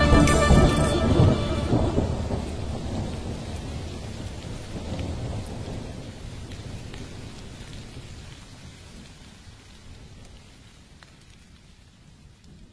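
Rain and thunder sound effect closing a song: the last music notes die away in the first couple of seconds, leaving rolling thunder and rain that fade out slowly until very faint.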